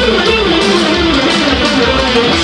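Electric guitar playing a fast, winding lead melody in an instrumental rock piece, over a sustained low accompaniment.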